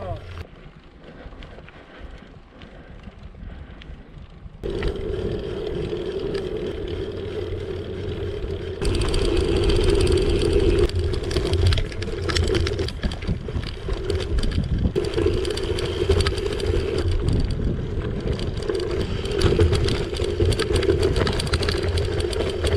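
Riding noise of a gravel bike picked up by a handlebar camera, quieter at first and louder from about five seconds in. From about nine seconds on the tyres crunch and rattle steadily over loose gravel.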